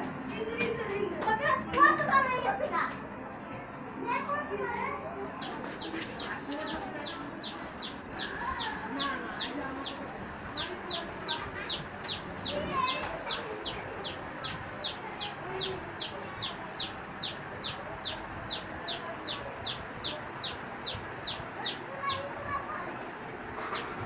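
An animal's short, high chirp, repeated evenly about twice a second. It starts a few seconds in and becomes more distinct about halfway through.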